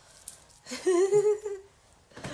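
An infant's single held vocal sound, a steady slightly wavering tone lasting under a second, starting a little past half a second in.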